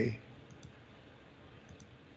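Faint clicks of a computer mouse in two quick double clicks, one about half a second in and one near the end, over low room noise.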